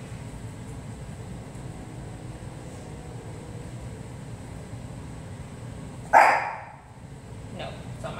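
A Shih Tzu gives a single short, loud bark about six seconds in, a frustration bark aimed at its trainer, who is deliberately ignoring it.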